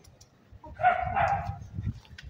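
A dog barking twice in quick succession about a second in, over a low rumble.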